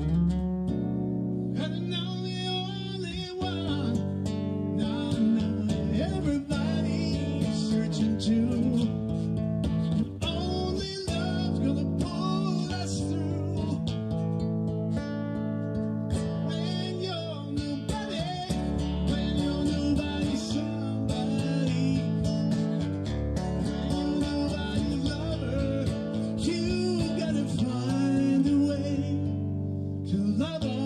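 An amplified acoustic-electric guitar played solo through a PA, with sustained notes and chords ringing over one another in an instrumental passage of a rock song.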